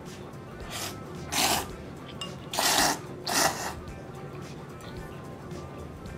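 A person slurping thick tsukemen noodles: three short, loud slurps about a second in, near the middle and just after, over background music.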